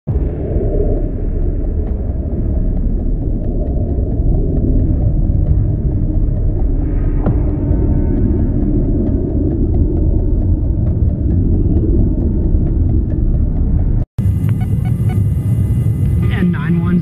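Steady low rumble of a tanker aircraft in flight, heard from inside its boom operator's compartment: jet engines and airflow past the fuselage. A split-second dropout about 14 seconds in, then a similar rumble goes on.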